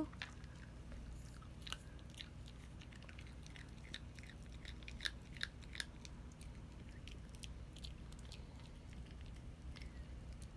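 Small dog crunching and chewing crumbled pieces of a dog biscuit: faint, scattered crisp crunches, a few sharper ones about five to six seconds in.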